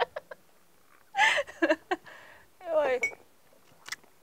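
A woman's breathy gasp, then a vocal groan falling steeply in pitch, as she reacts to the burn of a shot of strong rakija. A short click comes near the end.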